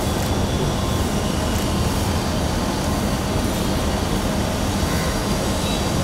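A steady, loud rumbling background noise with a low hum, cutting off suddenly near the end.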